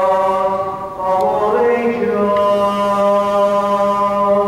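Orthodox liturgical chant: voices singing long held notes over a steady low held note, with a short break about a second in before the next phrase begins.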